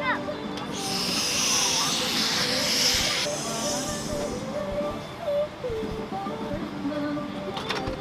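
A person blowing a long breath into the valve of an inflatable travel neck pillow: a hiss of air lasting about two and a half seconds that stops sharply.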